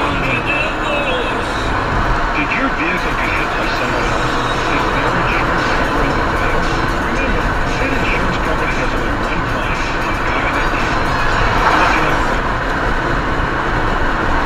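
Steady road and engine noise of a moving car, heard from inside the car by its dashcam, with indistinct voices underneath.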